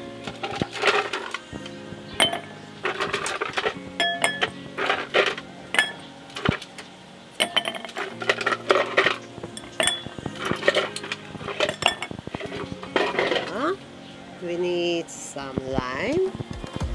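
Ice cubes dropped one by one into two glass wine glasses, clinking sharply against the glass many times, over background music with a steady beat.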